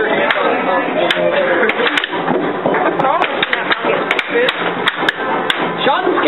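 Air hockey rally: plastic mallets hitting the puck and the puck clacking off the table's rails, sharp irregular clacks about two a second.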